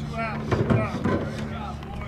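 Men's voices talking and calling out as softball teammates congratulate a home-run hitter, with a couple of sharp slaps about half a second in from high-fives.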